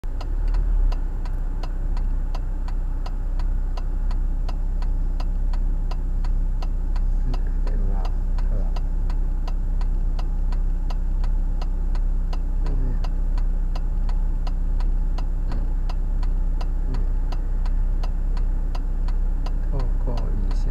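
A car's turn-signal indicator ticking steadily inside the cabin, about two to three ticks a second, over the low steady hum of the car's idling engine.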